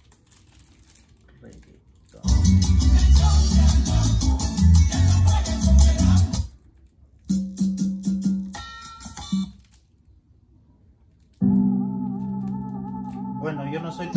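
Sony MHC-GPX7 mini hi-fi system playing Latin music with heavy bass through its speakers, starting about two seconds in after near silence. The music cuts off and starts again twice as tracks are switched, the last part with long held notes.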